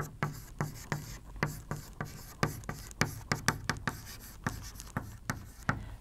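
Chalk writing on a blackboard: a quick, irregular string of short taps and scratches as a word is chalked out letter by letter.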